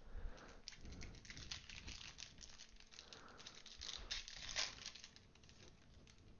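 Faint crinkling and crackling of a foil Panini Prizm basketball retail pack wrapper being handled and opened, the cards slid out. The crackles come in clusters, loudest a little after four seconds in.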